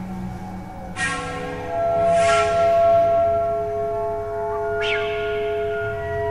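Experimental ambient electronic music. A bell-like metallic strike about a second in leaves several long, steady ringing tones, with a hissy swell soon after and a second, fainter strike near five seconds.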